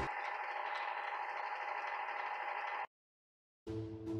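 Black & Decker convection toaster oven running: a steady whir from its fan. It cuts off abruptly a little before three seconds in.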